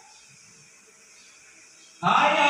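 Faint room tone in the pause between two phrases of a call to prayer (adhan).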